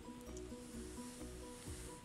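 Soft background music: a gentle melody of short, evenly paced notes.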